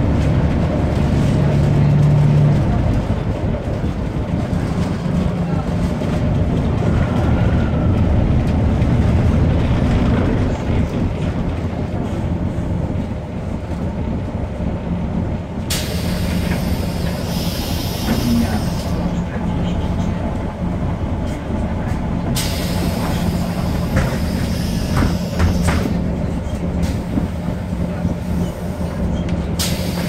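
Volvo 7000A city bus heard from inside the cabin: its Volvo D7C diesel engine and ZF 5HP592 automatic gearbox running steadily as the bus drives, the engine pitch shifting with speed. There are three stretches of hissing, about halfway through, again some seconds later, and near the end.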